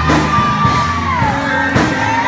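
Loud live church music with deep held bass notes and regular drum hits. A high held note slides down about a second and a half in, and worshippers shout and whoop over the music.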